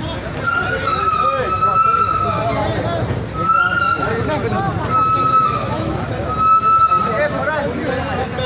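A vehicle horn honking: one long honk of about two seconds, then three short ones, over the voices of a crowd.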